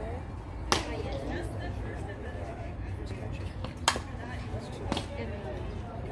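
Softball smacking into a leather glove: sharp pops about a second in, near four seconds, and a weaker one a second after that, over faint voices.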